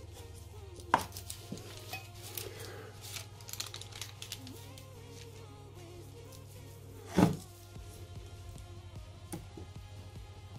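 A sharp knock about a second in as the powder cup is set down on the wooden bench, then baking paper rustling as it is folded and smoothed, and a heavier thud about seven seconds in as the clothes iron is set down on the paper. Soft background music runs underneath.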